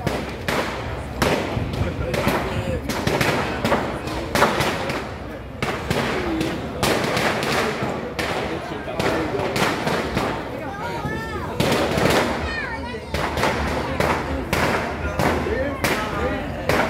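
Firecrackers going off in rapid, irregular pops, with many people's voices mixed in.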